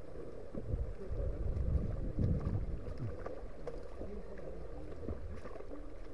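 Wind buffeting an outdoor microphone in gusts, over the low wash of a shallow stony river, with a few faint knocks.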